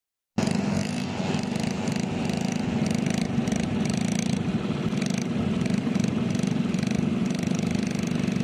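ATV (quad bike) engine running with a steady, even drone.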